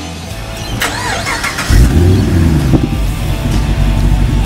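HSV Maloo ute's V8 engine starting a little under two seconds in, then running loudly, with rock music playing behind it.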